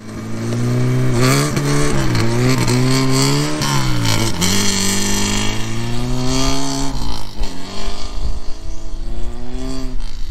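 Saab Sonett III's V4 engine running hard under acceleration, its pitch rising and dropping several times as the revs climb and fall. A rushing hiss comes in about halfway through.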